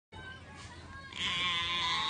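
A goat bleating: a faint call at first, then about a second in a louder, drawn-out bleat that is held steady.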